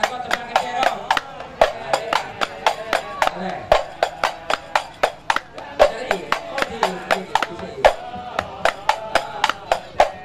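Sholawat Nabi sung over a microphone to a group of hadrah frame drums (rebana), which beat a quick, steady rhythm of about four sharp strikes a second under the singing.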